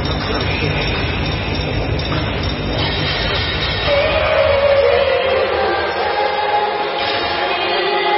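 Dance music over a hall's loudspeakers for a dance routine: a heavy bass beat that drops out about three and a half seconds in, leaving higher sustained tones.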